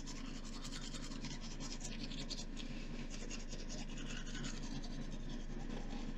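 Toothbrush scrubbing teeth in rapid, scratchy strokes over a steady low hum.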